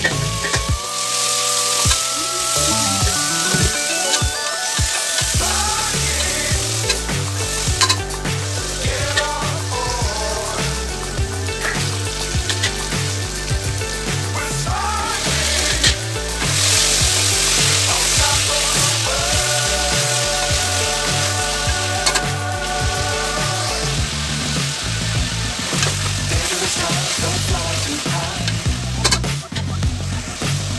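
Chopped vegetables frying and sizzling in hot oil in an open pressure cooker, over background music with a steady beat. The sizzle grows louder about halfway through.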